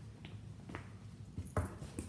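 Backpack straps being handled: a couple of faint clicks, then a louder clatter of the straps' metal quick-release hooks and fabric rustling near the end.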